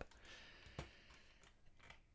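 Near silence with a few faint, scattered clicks of a computer mouse, the clearest a little under a second in.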